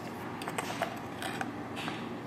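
Plastic measuring spoon scooping ground pepper out of a wooden spice cellar, with light scraping and a few small clicks.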